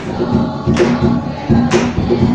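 A group of girls singing together in chorus, with a sharp beat about once a second.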